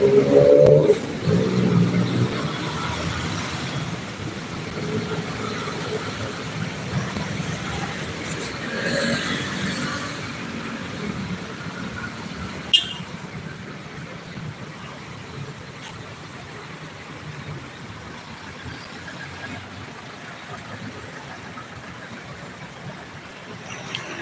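Street traffic: a steady wash of car and motorbike engines and tyre noise, louder in the first few seconds and then quieter. A single sharp click comes about halfway through.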